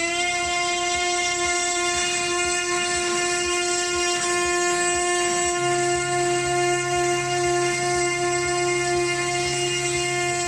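CNC router spindle whining at a steady high pitch while its bit mills a recess for a metal plate into a wooden box lid. A lower hum joins about halfway through.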